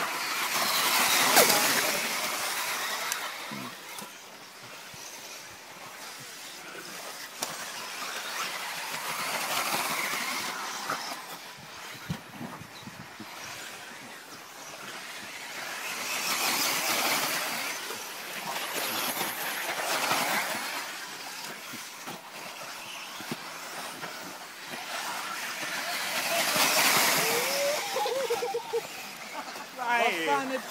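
1:10 scale 4WD electric off-road RC buggies racing on dirt: a hiss of motors and tyres swells and fades as cars pass close by. This happens several times and is loudest about a second in.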